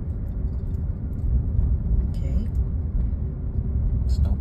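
Steady low rumble of a Jeep's engine and tyres heard from inside the cabin as it rolls slowly, with a short hiss about two seconds in.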